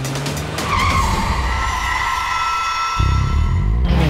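Cartoon sound effect of a race car's tyres screeching in a long skid as it drifts around a curve, starting about a second in, over engine sound and background music.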